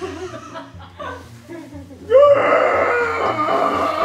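Background music with a repeating bass line, with light laughter at first. About two seconds in, a person lets out a loud, long wordless yell that wavers in pitch.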